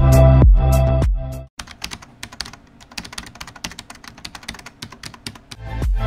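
Electronic background music with a heavy bass beat stops about a second and a half in. A quick, irregular run of computer-keyboard typing clicks follows. The music comes back just before the end.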